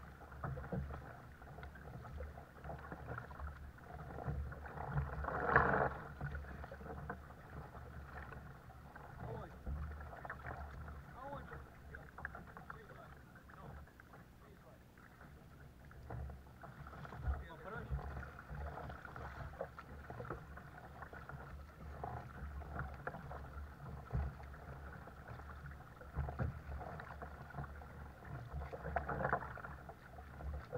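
Kayak paddle blades dipping and pulling through calm sea water in irregular strokes, with water splashing and lapping at the sit-on-top kayak's hull. The loudest splash comes about five seconds in.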